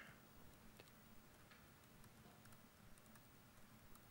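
Faint, irregular computer-keyboard keystroke clicks over near-silent room tone.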